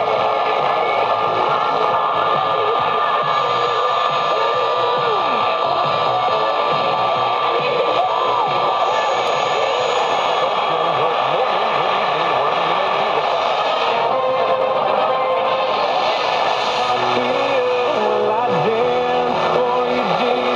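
AM reception from a Sony TFM-1000W portable radio's speaker while the dial is tuned: steady static and hiss with thin whistling tones, sliding tones and weak, garbled station audio. This is typical of distant stations heard through interference while AM DXing.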